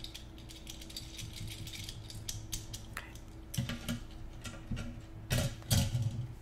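Handcuffs being tightened: a run of quick ratchet clicks as the cuff's toothed arm is pushed further in. There are a few louder clacks and knocks in the second half.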